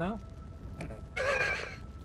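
A short breathy laugh lasting under a second, about a second in, over a faint steady hum.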